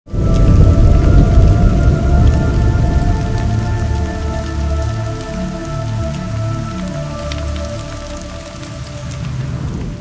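Cinematic logo-reveal sound effect. It starts suddenly with a loud, deep rumble, under a held chord of steady tones and scattered crackling, and slowly fades out.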